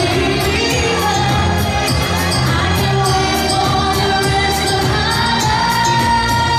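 Live pop singing by a female vocalist over an amplified backing track with a steady dance beat, played loud through a PA in a large hall.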